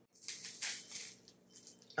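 Faint rustling and crinkling as food is handled at the table, a series of quick dry rattly ticks that dies away after about a second and a half.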